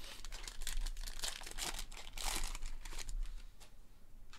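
Foil wrapper of a Panini Prizm soccer hobby pack being torn open and crinkled by hand, in a run of rustling bursts that are loudest around the middle.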